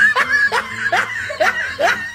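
A person laughing in a string of short chuckles, about three a second.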